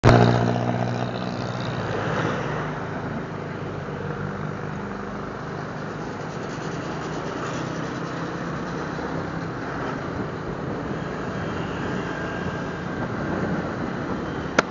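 Suzuki Smash motorcycle's single-cylinder four-stroke engine running as the bike is ridden, with wind and road noise; loudest in the first second.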